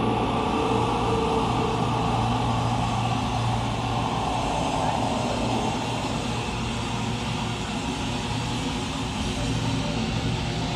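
Death metal band playing live through a PA: a loud, dense wall of distorted guitars and bass over drums, with growled vocals on top.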